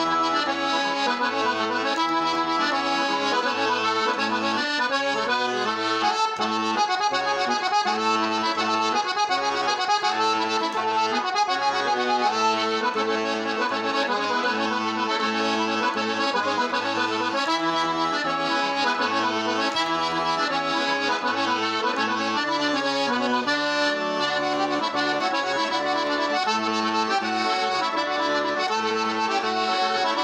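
Piano accordion playing a Sardinian ballu logudoresu dance tune: a continuous melody over a steady, evenly repeating bass pattern.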